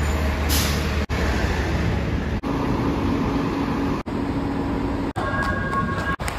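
City buses running, with a short burst of air-brake hiss about half a second in and a steady high-pitched squeal near the end. The sound breaks off briefly several times.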